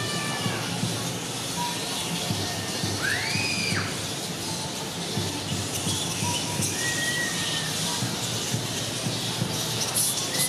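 A roost of large flying foxes chattering and squabbling: a dense, continuous clatter of calls. A clear whistled note rises and falls about three seconds in, and a shorter level one comes near seven seconds.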